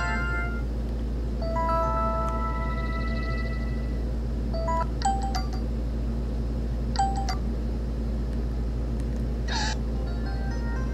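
A ZTE A310 feature phone previewing its preset SMS alert tones, each a short chime-like jingle of a few notes: one with held notes early on, then brief ones about five and seven seconds in, and a short buzzy tone near the end. A steady low hum from a room air conditioner runs underneath.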